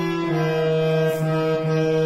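Harmonium played alone: a melody of held reed notes that steps to a new pitch a couple of times.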